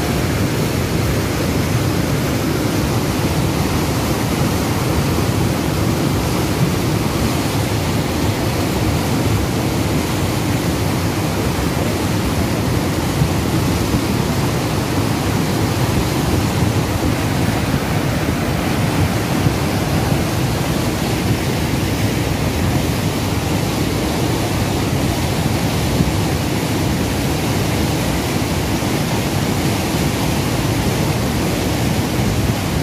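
Cold lahar from Mount Semeru flowing past: a fast, heavy flood of muddy water carrying rocks, heard as a deep, steady rushing noise.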